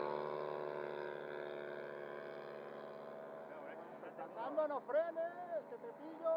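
Radio-controlled scale Fokker model plane's engine running steadily as it makes a low pass, fading over the first few seconds as the plane flies away. Faint voices come in during the second half.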